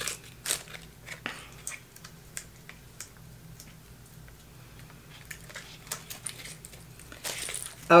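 Scattered small clicks and light crinkling of packaging being handled as a cat wand toy is worked free from its cardboard backing card.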